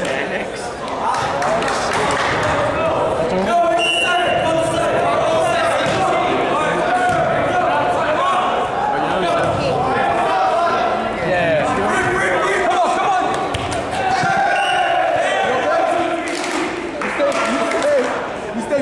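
Players' voices and shouts echoing in a gymnasium, with the thuds of a volleyball being hit and bouncing during a rally.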